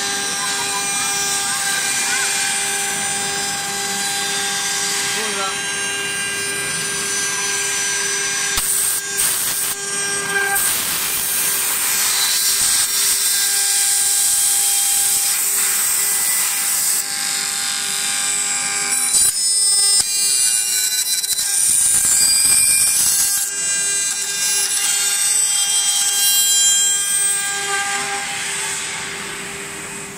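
CNC wood turning lathe with its router spindle cutting spiral flutes into a turning wooden baluster. A steady machine whine runs under a rough cutting noise that swells and eases as the cutter works.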